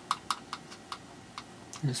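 A quick, irregular run of about seven light, sharp clicks in under two seconds, like keys or small taps.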